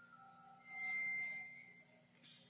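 A high, steady whistle-like tone, held for about a second and fading away, after a fainter lower tone at the start.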